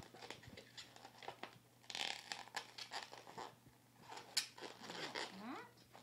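Latex modelling balloon squeaking and rubbing in the hands as it is squeezed and twisted, the nose being pushed through a twisted loop, with scattered scratchy rubs and a sharp click about four and a half seconds in.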